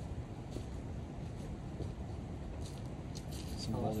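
Steady low outdoor rumble with a few faint scuffs, and a voice starting right at the end.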